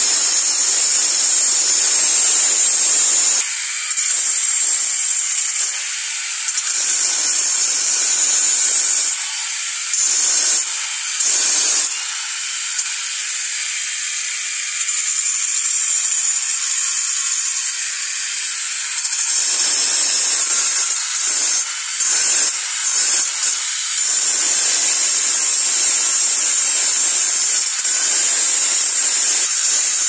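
Handheld electric angle grinder with its disc grinding a stone statue: a loud, hissing grind of the disc on stone. It lightens for a few seconds about four seconds in and for a longer stretch in the middle, leaving a thinner motor whine, then cuts back in with several brief breaks as the disc is pressed on and eased off.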